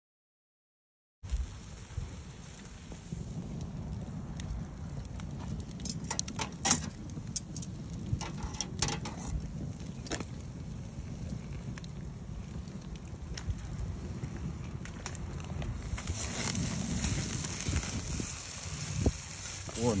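Red oak chunk-wood fire crackling under a wire-mesh grill with food sizzling on the grate, sharp pops now and then over a low steady rumble. It begins about a second in.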